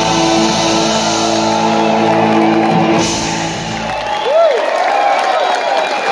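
Live rock band holding a final chord on electric guitars, which stops about four seconds in; the crowd then cheers, with whoops and whistles.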